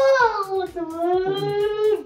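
A high voice singing one long drawn-out note that slides down in pitch about half a second in and is then held steady until it stops near the end.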